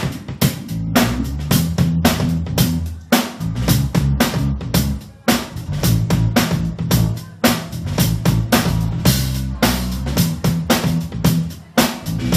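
Live rock band playing without vocals: a drum kit keeping a steady beat under bass guitar and electric guitar.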